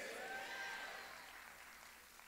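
Faint congregation applause and voices responding to a call for an amen, fading out after about a second into near silence.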